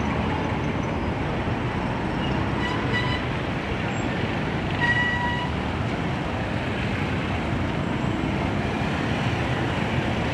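Busy street traffic: minibus, truck and motorcycle engines running in a steady din, with a short horn toot about three seconds in and another, louder one about five seconds in.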